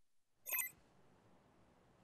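A brief, bright chime-like sound effect about half a second in, a broadcast transition sting marking the end of the logo bumper, followed by faint studio room tone.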